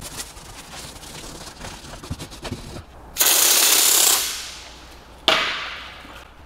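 Soft brush scrubbing around a car badge, then two loud hissing bursts of liquid cleaner being sprayed. The first starts about three seconds in, holds about a second and trails off. The second starts suddenly about five seconds in and fades.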